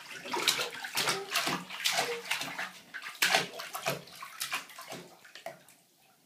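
Shallow bathwater splashing and sloshing as a baby paddles in the tub, in quick irregular splashes that die away near the end.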